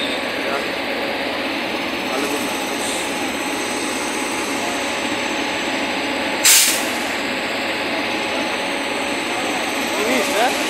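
WAP-7 electric locomotive running steadily with its auxiliary machinery on after start-up. About six and a half seconds in comes a short, sharp hiss of compressed air being released.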